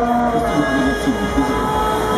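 Several horns sounding at once in long, steady, overlapping blasts at different pitches, with voices underneath.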